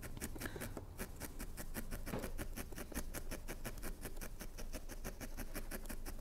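Felting needle stabbing repeatedly into a wool felt piece, a fast even run of faint soft ticks, about six a second, as a dimple is needled in for an eye.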